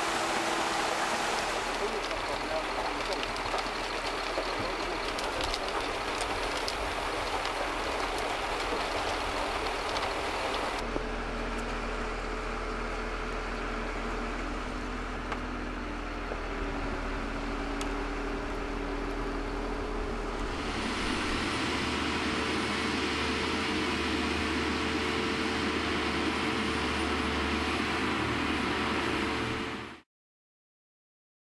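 Engine of a MOB-Flextrac tracked concrete-mixer carrier running steadily, in several takes spliced together, with abrupt changes in the sound about 2, 11 and 21 seconds in. It cuts off at the end.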